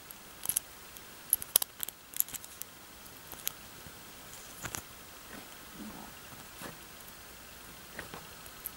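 Faint, irregular small clicks and scrapes of a tiny metal screwdriver tip working a small washer into the plastic rotor housing of a Kärcher Dirt Blaster nozzle, nudging it to sit straight on the housing's legs. The clicks come thickest in the first few seconds, then sparser.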